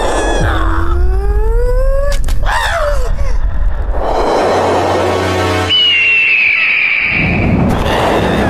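Cartoon soundtrack music with comic sound effects: a long rising pitched glide in the first two seconds, then a high whistling tone held for a couple of seconds near the end.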